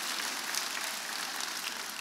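An audience applauding: a steady, even patter of many hands clapping.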